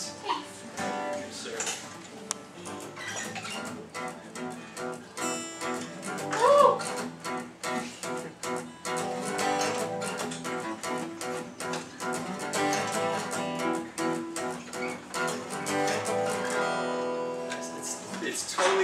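Acoustic guitar being strummed in a swing, shuffle feel, with the offbeat 'ands' pushed late instead of even straight eighth notes. A short rising-then-falling vocal sound about six and a half seconds in is the loudest moment.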